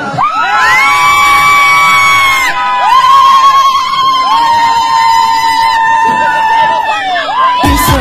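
Several women ululating (zaghareet), loud high-pitched trilling calls held for two seconds or more each, in about three long calls one after another. This is a celebration of a passed exam result.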